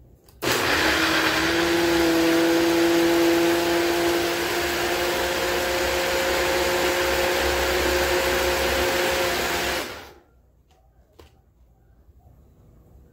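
Personal bullet-style blender running steadily, its motor whirring as it blends chopped ginger; it starts about half a second in and stops after about nine seconds. A couple of faint clicks follow near the end.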